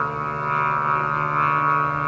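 Kite flutes (sáo diều) on a kite flying in strong wind, droning a steady chord of several tones at once, the higher tones swelling and wavering with the wind.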